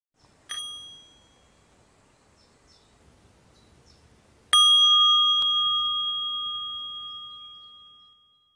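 A small bell struck twice: a short, light ding about half a second in, then a louder strike a few seconds later that rings on with a clear, high tone and slowly fades away.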